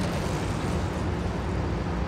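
Steady outdoor city background noise: a continuous low rumble and hiss of road traffic.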